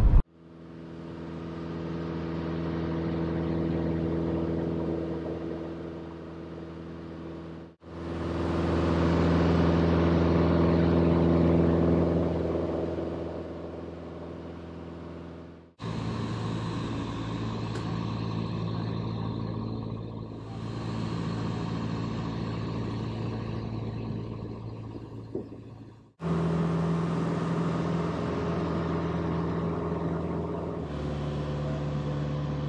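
Piper Cherokee PA-28-180's four-cylinder Lycoming engine and propeller droning steadily in flight, heard from the cabin. The drone breaks off and resumes abruptly three times, each stretch at a slightly different pitch and loudness.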